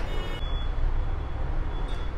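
A steady low background rumble with no distinct event in it.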